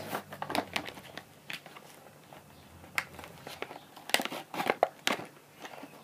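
Rustling with scattered clicks, close to the microphone, including a cluster of sharper clicks about four seconds in.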